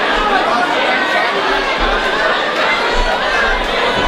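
Crowd chatter: many overlapping voices talking at once around a boxing ring.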